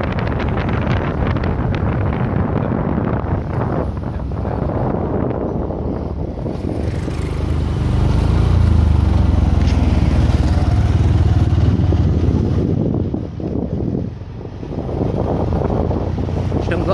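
Motorcycle running along the road with wind buffeting the microphone. It grows louder for a few seconds in the middle and drops briefly near the end.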